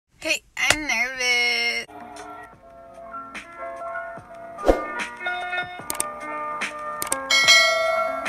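A short, loud voice greeting with sliding pitch in the first two seconds, then an intro jingle of light music with bell-like picked notes. A bright shimmering chime comes in near the end.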